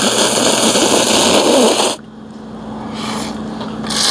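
Ramen noodles being slurped loudly from a cup: one long slurp of about two seconds, then a quieter stretch, and another slurp starting near the end.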